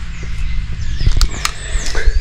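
Footsteps over scattered dry twigs and rubble, with two sharp snaps a little past a second in, over a steady low rumble of wind buffeting the microphone.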